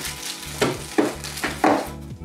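Plastic packaging bags crinkling and rustling as bagged parts are handled, with three sharper crackles about half a second, one second and one and a half seconds in.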